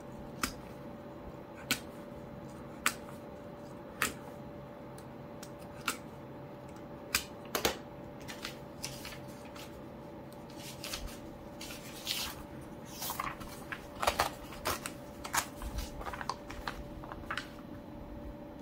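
A utility knife cutting through a Hobonichi Day-Free diary's sewn binding threads in separate sharp clicks over the first eight seconds or so, then thin diary pages being pulled apart and turned with rustling.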